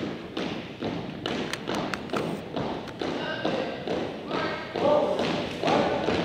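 Drill marching footsteps of a color guard on a hardwood gym floor: steady thuds of boots striking in step, about two a second, with voices heard between them.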